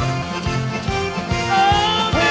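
Live band playing an instrumental passage of a Neapolitan tarantella between sung lines, with a steady beat.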